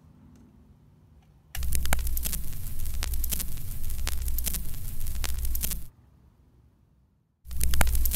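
Vinyl record surface noise: dense crackle and pops over a low hum, as of a stylus riding the groove before the music starts. It comes in about a second and a half in, cuts out near six seconds, and returns just before the end.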